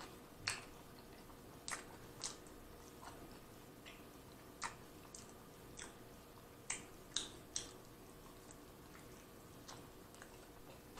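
Close-miked chewing of a mouthful of steak burrito: faint, irregular wet mouth clicks and smacks, about a dozen over ten seconds.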